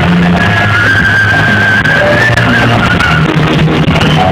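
Loud live band music through a PA system: steady bass underneath, with a long held high note that starts about half a second in and wavers from about two seconds in.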